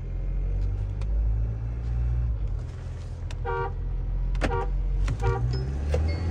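SUV engine heard from inside the cabin, pulling hard from a roll at about 20 km/h as the automatic gearbox kicks down from second gear. A few short high tones sound over it near the middle.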